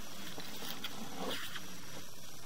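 Steady hiss with faint scraping and rustling as a sewer inspection camera's push cable is pulled back out of the pipe.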